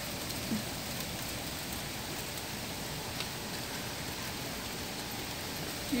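Heavy rain with hail pouring down, a steady hiss with a few faint ticks of hailstones striking.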